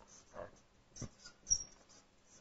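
Faint marker strokes and taps on a whiteboard: a soft sound early on, then short sharp ticks about a second in and again half a second later, the second with a brief high squeak.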